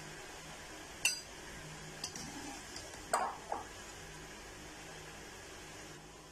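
A steel slotted spoon clinking against a steel pot and a glass bowl while lifting out boiled cauliflower: a sharp clink about a second in, a lighter one near two seconds, then two fuller knocks a little after three seconds.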